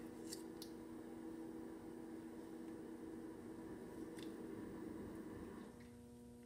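Faint clicks and crinkles of a plastic seal being bitten and picked at on a frozen honey squeeze bottle: a couple near the start and one about four seconds in. A steady low hum runs underneath.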